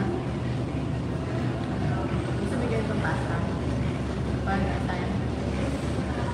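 Steady background hubbub of a busy eating place: indistinct voices over a continuous low hum.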